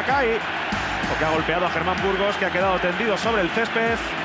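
A television football commentator calling a shot and its aftermath in a raised, excited voice, over stadium crowd noise with music laid underneath. The audio is dull and thin, like old broadcast sound.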